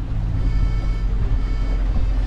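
Boat's outboard motor running steadily at trolling speed, a constant low rumble, with background music over it.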